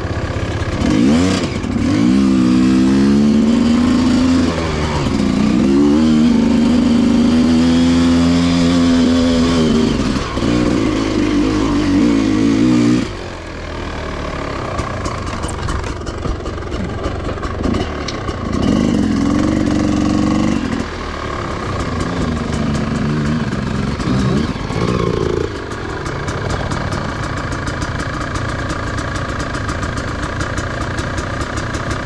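Dirt bike engine revving up through the gears, its pitch climbing repeatedly and falling back with each shift, loud for the first dozen or so seconds and then settling to lower revs, with a few short blips of throttle later on.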